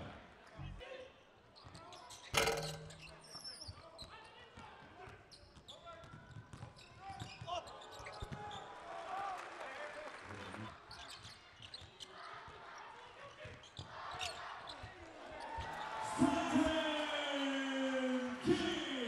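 Basketball game sound in a large arena hall: a ball being dribbled on the hardwood court amid small knocks and shoe noise, with one sharp loud bang about two and a half seconds in. Voices rise near the end.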